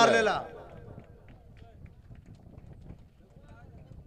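A man's loud, drawn-out call trails off in the first half second. After that there is faint outdoor background with distant, indistinct voices.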